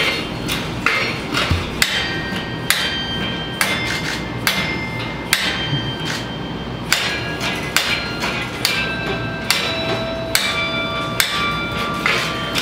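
Tower bells struck one after another by clappers worked from a wooden-peg keyboard, about two strokes a second, each note ringing on under the next, with a short pause about halfway through.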